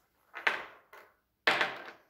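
Two short handling noises of ohmmeter test leads and probes being picked up and moved, one about half a second in and a louder one near the end, each dying away quickly.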